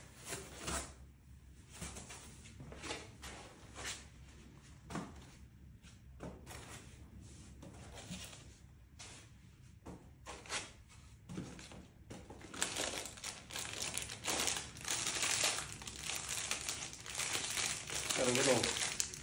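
Packing being handled in a wooden shipping crate: scattered rustles and light knocks as foam packing is lifted out, then, from about two-thirds of the way through, continuous crinkling of plastic wrapping.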